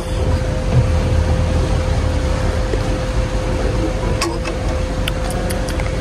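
Steady low rumble with a constant mid-pitched hum, like a running machine, and a few faint clicks about four and five seconds in.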